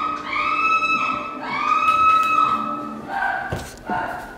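Three long, high-pitched held vocal notes in a row, each about a second long and on much the same pitch, followed near the end by lower voice sounds and a knock.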